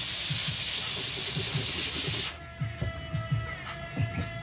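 Handheld steam cleaner jetting steam onto a sneaker with a loud, steady hiss that cuts off suddenly a little over two seconds in.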